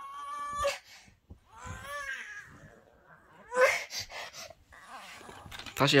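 A young child whining, two short high-pitched whimpers in the first two seconds, the first rising in pitch and the second rising and falling.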